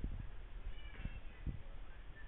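Muffled thuds of boxing sparring in a ring: footwork on the canvas and gloves landing, several irregular knocks. A brief high-pitched squeak comes about a second in.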